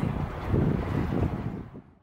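Wind gusting on the microphone over sea surf, fading out near the end.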